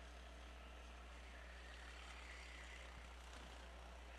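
Near silence: a faint steady hum and hiss, with racing karts' engines faintly audible under it.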